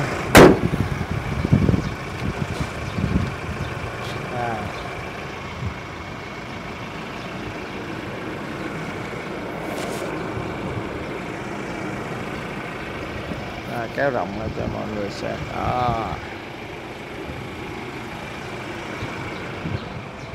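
Steady vehicle engine and traffic noise, with a sharp click just after the start and brief low voices about 14 and 16 seconds in.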